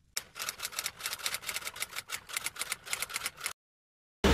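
Typewriter keystroke sound effect: a quick, even run of sharp key clicks, several a second, lasting about three seconds and stopping suddenly.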